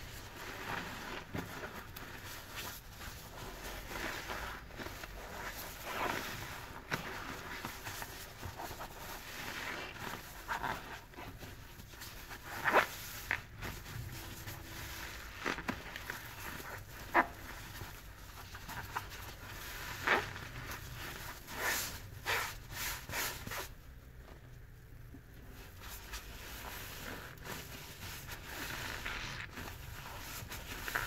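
Sudsy foam sponges being squeezed and squished in soapy water: wet squelching and the crackle of foam, with irregular sharper squelches scattered through and a short quieter pause near the end.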